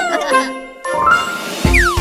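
Cartoon sound effects over children's music: a few sliding tones fade out, then a bright, tinkling magic-sparkle chime rings from about a second in. Near the end a quick falling whistle lands on a low thump.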